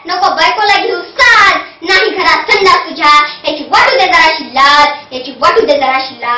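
A young girl's voice reciting verse in a sing-song, half-sung chant, in short phrases with brief breaks between them.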